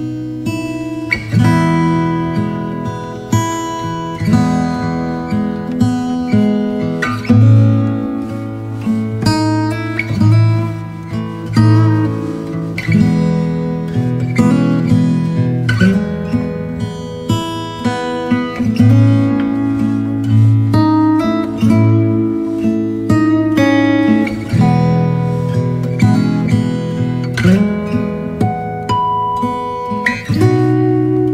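Background music: acoustic guitar playing plucked notes and chords at an unhurried pace.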